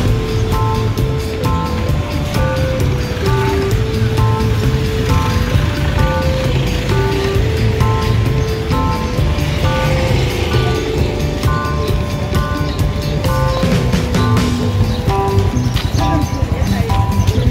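Instrumental background music: a repeating melody of short notes over a steady low beat.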